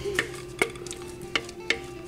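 Thick biscuit-mix batter pouring and being scraped out of a glass mixing bowl into a baking pan, with a series of light clicks about two or three a second.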